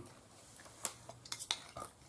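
A few sharp clicks of cutlery against a dish while eating, spaced irregularly through the second half.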